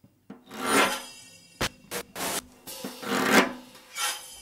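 Improvised extended-technique drumming: something scraped across a drum or cymbal in two swelling strokes, with a few short sharp knocks on the kit between them.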